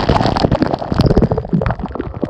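Cold water falling from above and splashing over a bather and onto a camera held at the water's surface: a loud, dense, irregular patter of drops and splashes.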